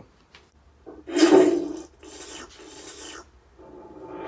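Two noisy, hiss-like sound effects from the opening of the played music video, not music or speech. The first is short and loud, about a second in. The second is quieter and longer, about two seconds in.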